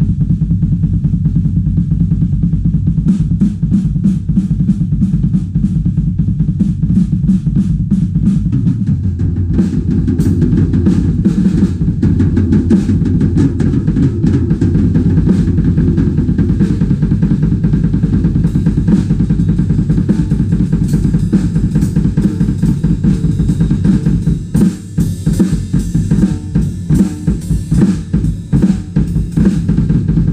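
Acoustic drum kit played with fast, continuous double bass pedal strokes under snare hits and cymbals. Near the end the playing turns choppier, with short gaps between the phrases.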